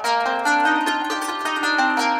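Qanun, an Arabic plucked zither, played with quick plucked notes that ring on over one another.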